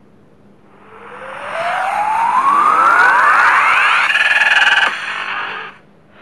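Video-intro sound effect: a rising synth sweep over a noisy whoosh that climbs in pitch for about three seconds, then a brief pulsing chord about four seconds in, fading out near the end.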